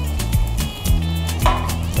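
Background music with a steady beat and a sustained bass line.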